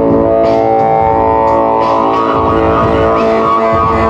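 Live band with upright bass and keyboard playing an instrumental passage: held chords over a steady beat.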